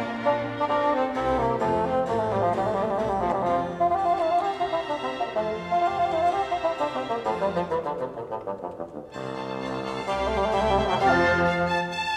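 Classical-era bassoon concerto: a solo bassoon playing running, descending phrases with a string chamber orchestra. The music turns briefly softer about eight seconds in before the strings swell again.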